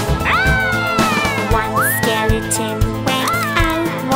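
Three high, wailing cartoon sound effects over children's background music with a steady beat. Each rises quickly and then slides slowly downward: one near the start, a long one about two seconds in, and a short one near the end.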